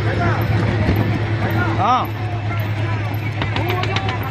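A boat's engine running with a steady low hum, under people's voices calling out, one loud call about halfway through.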